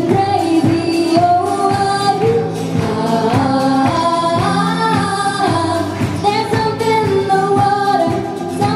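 Live acoustic band: a woman singing a melody over strummed steel-string acoustic guitar, with a cajon struck with a mallet keeping a steady beat.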